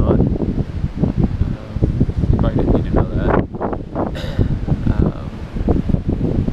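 Wind rumbling on the microphone, with a person's voice speaking intermittently over it.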